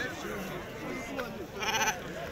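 A sheep bleats once near the end, a short quavering bleat, over a background of men's voices.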